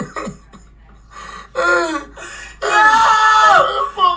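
A person's voice: a short exclamation, then a loud drawn-out cry held at an even pitch for about a second near the end.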